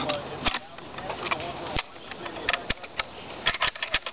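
Metal clicks and clacks of an L1A1 (FAL-pattern) rifle being reassembled by hand, a few separate sharp clicks and then a quick run of them near the end.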